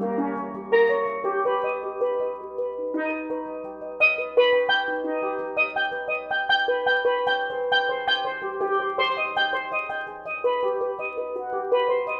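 Solo steel pans played with mallets: a fast, dense passage of struck, ringing notes moving across several pans, busier and louder from about four seconds in.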